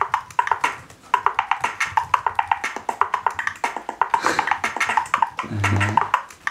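A live-coded Tidal drum-machine pattern of clap, snare and bass-drum samples, played back at raised speeds so each hit sounds short and high-pitched. It makes a fast, stuttering rhythm of about eight hits a second.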